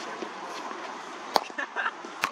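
A single sharp knock from a cricket ball about two-thirds of the way through, with a few fainter clicks after it, over faint background voices.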